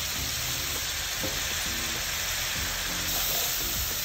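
Soy-sauce and oil mixture in a wok sizzling steadily as water is poured into it.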